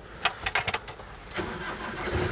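Van driving, heard from inside the cab: steady engine and road noise with a few sharp knocks.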